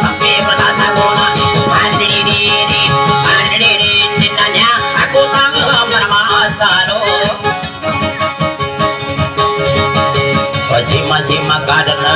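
A small guitar played with steady plucking and strumming, amplified, with a man's voice singing over it at times.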